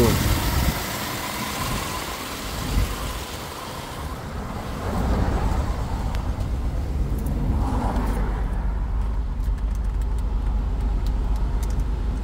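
BMW X6 (E70) engine idling: a steady low rumble, heard first at the open engine bay and then more muffled from inside the cabin. A few light clicks come in the last few seconds.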